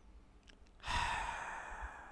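A man sighs once, a long breathy exhale that starts about a second in and fades away.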